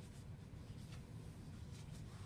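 Quiet room tone with a steady low hum and a couple of faint, brief rustles, about one second in and again near the end.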